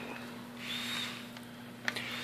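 Quiet background: a faint steady hum and hiss, with a light click near the end.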